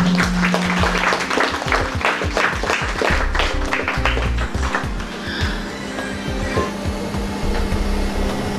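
A band's final chord rings out and fades while a small audience claps, the clapping thinning out after about five seconds.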